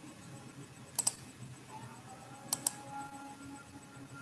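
Someone clicking at a computer: two pairs of sharp, quick clicks, about a second in and again about two and a half seconds in, over a faint steady hum.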